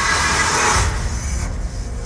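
Film trailer soundtrack: music with a loud rushing sound effect over a deep rumble, the rush cutting off about a second and a half in.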